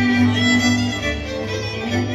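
Fiddle-led folk dance music played by a string band: a violin carries the tune over steady accompaniment chords and a bowed bass, with the notes changing about every half second.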